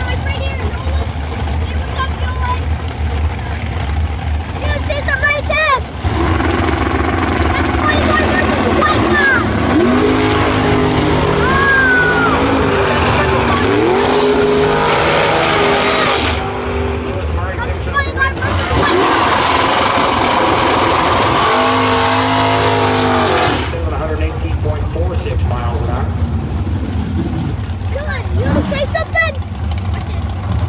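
Drag racing cars running at full throttle down the strip, loud for about eighteen seconds. The engine pitch climbs and drops back in steps as the cars shift gears.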